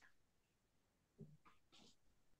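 Near silence: faint room tone over a video-call line, with a soft knock a little over a second in and a brief faint rustle after it.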